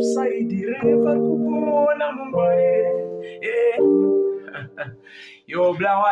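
Electronic keyboard playing sustained piano-like chords, changing chord about every one and a half seconds. A man's voice comes in near the end.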